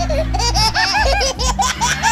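A person laughing hard in a quick run of high-pitched 'ha ha' bursts, over music from the stage's sound system.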